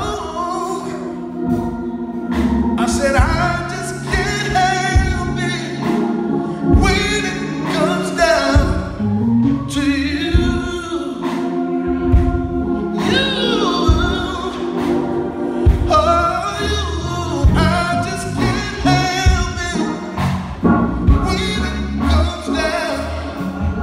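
Live gospel music: a male soloist singing into a handheld microphone over an amplified band, with sustained low bass notes and regular drum hits.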